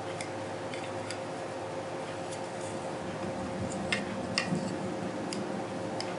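A handful of light, scattered clicks and taps from a pair of Pau Ferro wood pistol grip panels being handled and turned over in the hands, over a faint steady hum.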